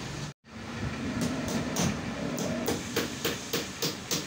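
Regular mechanical clicking clatter, about four to five sharp clicks a second, over a steady workshop background noise. It starts about a second in, after a brief dropout.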